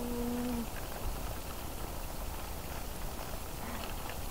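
Steady low rumble of wind on the microphone and tyres rolling, from a tandem bicycle being ridden along a woodland track. A rider's held hummed note fades out in the first half second.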